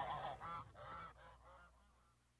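The song's final sound dying away in a delay echo: a short nasal, honk-like pitched sound repeats about every 0.4 s, each repeat fainter, until it fades out shortly before the end.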